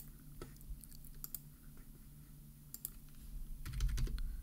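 Computer mouse and keyboard clicks, a few scattered single clicks and then a quicker run of taps near the end, over a faint steady low hum.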